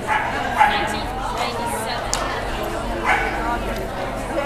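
A dog barking a few short times during an agility run.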